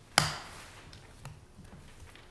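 A single sharp knock on a wooden desktop about a fifth of a second in, from papers and a pen being handled at the desk. Quiet room sound follows, with faint handling noises.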